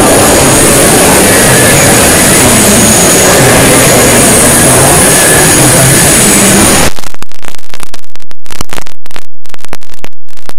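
Extremely loud, heavily distorted noise with a few steady high tones. About seven seconds in it switches abruptly to harsh, choppy bursts broken by brief dropouts.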